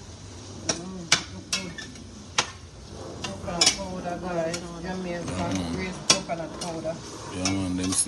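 Metal spatula clinking and scraping against a stainless steel sauté pan as onions, peppers and pumpkin are stirred, with irregular sharp taps every half second or so. The vegetables sizzle lightly underneath.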